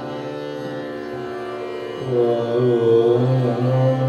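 Hindustani classical vocal music: a steady tanpura drone, then about two seconds in a male voice enters on a long held note that wavers slightly, with harmonium underneath. No tabla strokes.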